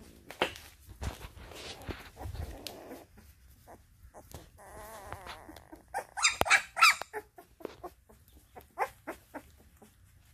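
Young Maremma–Great Pyrenees puppies whimpering and squealing in short high calls, with a louder run of squeals about six to seven seconds in.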